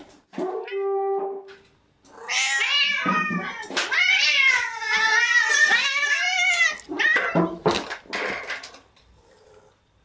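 Domestic cat meowing: a short meow held at one pitch, then a long meow of about five seconds that wavers up and down in pitch. A few clicks and knocks follow near the end.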